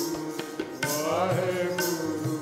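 Sikh kirtan music: a harmonium holds sustained chords, and a jori (tabla-style drum pair) strikes about once a second, with voices chanting over them.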